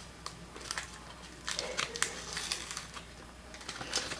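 Sticky label paper and clear tape being handled and peeled apart by hand: faint crinkling with small scattered ticks, busiest from about one and a half to nearly three seconds in.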